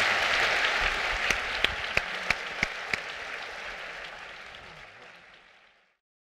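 Theatre audience applauding, with a few sharp single claps standing out in the first half, the applause steadily fading out to silence near the end.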